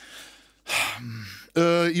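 A man drawing an audible breath close to the microphone: a faint hiss, then a louder, longer one. His speech begins near the end.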